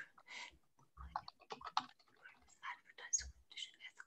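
Faint computer keyboard typing picked up over a video-call microphone: irregular, quick keystrokes.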